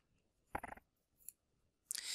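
Near silence broken by a short soft click about half a second in and a fainter tick a little later, then the start of an indrawn breath right at the end.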